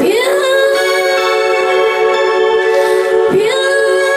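A woman singing an Indian-style song into a microphone, long held notes that swoop up into pitch twice, at the start and again about three seconds in, over a steady sustained accompaniment.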